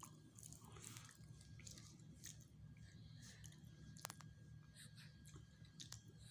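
Near silence with faint chewing and small scattered mouth clicks, one slightly sharper click about four seconds in.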